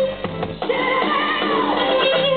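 Live electric guitar solo in a slow blues with a band behind it: long held notes bent and sliding down in pitch, with a short lull just after the start before a new sustained note rings out.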